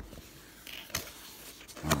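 Cardboard box being pried open by hand: a short scrape followed by a sharp snap about a second in.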